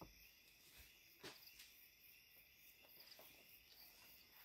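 Near silence with faint, steady high-pitched insect chirping and a soft knock about a second in.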